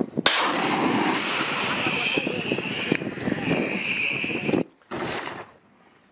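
Truck-mounted multiple rocket launcher firing: a sudden blast, then a crackling rushing roar for about four seconds, followed by a shorter burst after a brief break.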